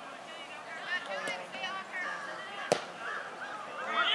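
Several high voices calling and shouting across a soccer field, with a single sharp thump of a soccer ball being kicked a little past halfway.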